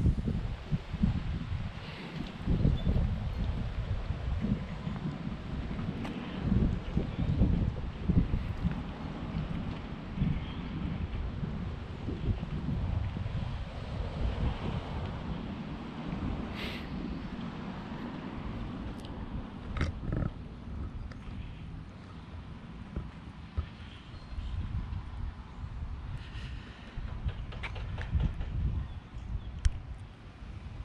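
Wind buffeting the camera microphone: an uneven low rumble that rises and falls in gusts, with a few faint clicks.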